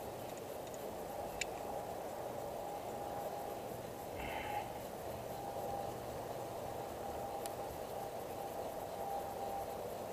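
Steady wind noise rushing over the microphone, with a couple of faint clicks from handling the antenna connector parts.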